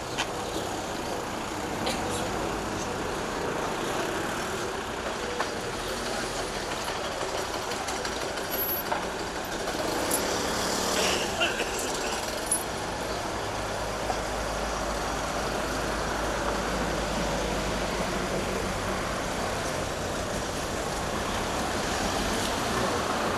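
Street traffic going by, with a heavy vehicle's low rumble building through the second half. A few short sharp clicks fall around the middle.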